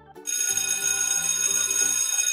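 Cartoon alarm-clock bell sound effect ringing for about two seconds, then fading, signalling that the quiz countdown has run out. Light children's background music continues underneath.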